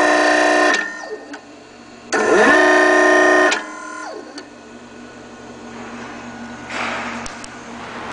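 REXA electraulic actuator's servo motor and hydraulic pump whining through two strokes, one ending about a second in and one from about two to three and a half seconds in. Each whine rises in pitch as the motor starts, holds steady, then falls away as it stops.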